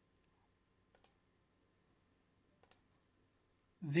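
A few faint computer mouse clicks over quiet room tone: a single click about a quarter second in, then quick pairs of clicks about a second in and near three seconds in.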